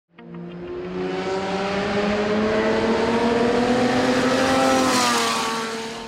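Jaguar XJR-9 LM race car's V12 engine running hard, growing louder with its note rising steadily as it approaches, then dropping in pitch and fading as it passes about five seconds in.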